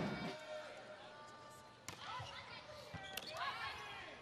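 Faint sounds of an indoor volleyball court: a single sharp smack of the ball about two seconds in, and a few short, high squeaks of shoe soles on the court floor.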